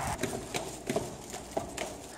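Footsteps on a hard indoor floor: several irregular short knocks as people walk through the building.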